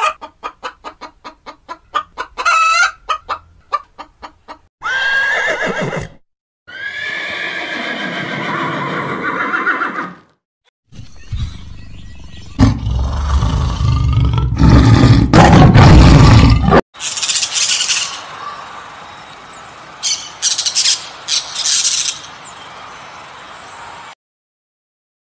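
A string of different animal calls, one after another. It opens with rapid clucking from hens, followed by two longer pitched calls. A loud, deep growl from a tiger comes around the middle and is the loudest part, and near the end there are several short, high calls.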